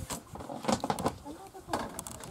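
Faint, indistinct voices with several sharp clicks and knocks on a boat deck, the loudest just under a second in and again near the end.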